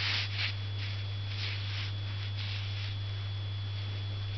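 Ink brush stroking across paper: a few soft, brief swishes over a steady low electrical hum.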